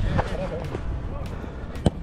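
Footballers' voices calling out faintly across the pitch during play, with a single sharp thump near the end.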